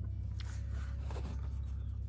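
Camera handling noise as the camera is moved: a few faint rustling, scraping touches over a steady low rumble.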